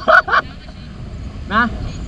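Riders' voices while riding: a quick run of short vocal bursts at the start, then a short rising call of "Na?" about a second and a half in, over steady wind and road noise from the moving bicycle.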